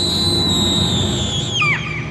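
A high, steady whistle held for about a second and a half, then dropping in pitch and fading near the end, over a low ambient rumble.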